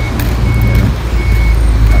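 An electronic warning beeper, of the kind fitted to a reversing vehicle, sounds one high beep about every three-quarters of a second, three times, over a loud low rumble.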